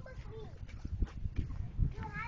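Footsteps on wood-chip mulch: irregular soft thuds and a few sharper scuffs as people walk and run across it.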